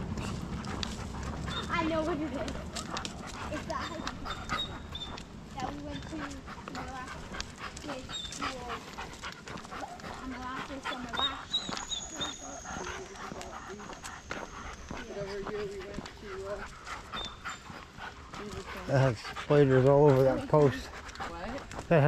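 A dog panting as it walks on a leash, with scattered short clicks of steps on the paved road. A person's voice is loud briefly near the end.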